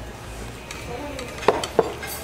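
Dishes and cutlery at a table clinking: two sharp clinks close together about a second and a half in, as a plate of pie is set down among the dishes.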